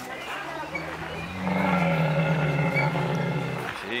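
Camel calling: one long, low-pitched call that swells loud about one and a half seconds in and cuts off just before the end. The rider takes it as a sign that the camel is angry.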